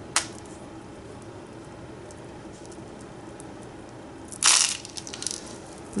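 Beads and bits of jewellery clattering against each other in a plastic tub as hands rummage through them: a single click just after the start, then a short, louder rattle about four and a half seconds in, with a few small clicks after it.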